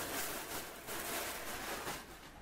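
Rustling of a pile of baby clothes being handled and lifted, an uneven soft hiss of fabric with a few small scuffs.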